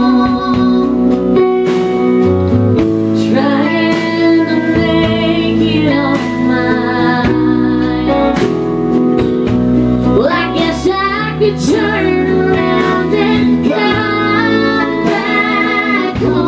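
Live country music: a woman singing over her strummed acoustic guitar, with a small band accompanying.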